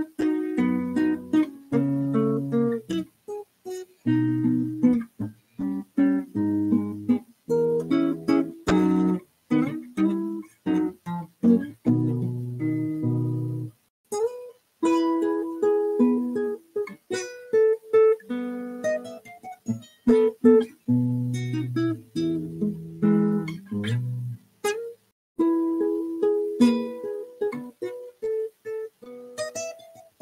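Solo classical guitar, fingerpicked, playing a lively piece of quick plucked notes and ringing chords, with a few brief pauses between phrases.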